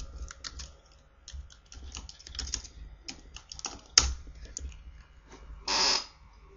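Light, irregular keystrokes on a computer keyboard, with one sharper click about four seconds in and a short burst of noise near the end.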